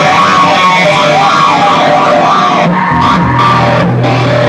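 Live rock band playing loud, dense guitar-driven music at the opening of a song. A steady low note comes in about three seconds in.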